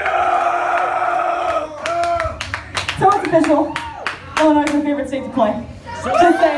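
A held shouted note from a live-band vocalist over the PA as a song ends, followed about two seconds in by scattered clapping, then loud shouting voices.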